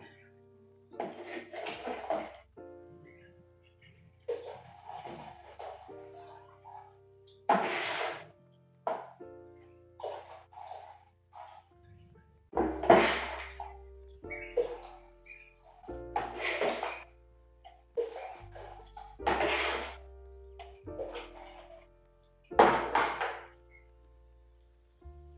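Background music with sustained keyboard notes, over an irregular series of short splashy bursts, about seven in all, as zobo (hibiscus drink) is poured a cupful at a time through a small sieve into a pot.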